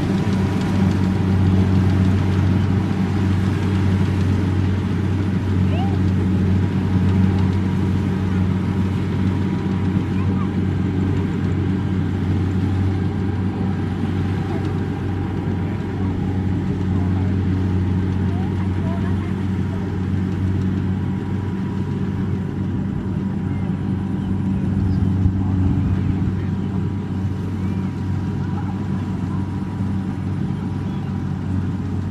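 Combine harvester's diesel engine running steadily: a low, even drone that eases off slightly toward the end as the machine works away.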